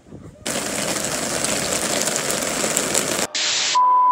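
TV-static hiss sound effect that starts abruptly about half a second in and cuts off sharply, followed by a brief second burst of hiss and then the steady high beep of a test-pattern tone that goes with colour bars.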